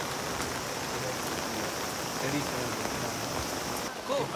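Steady rain falling onto an umbrella held close, an even hiss with no break.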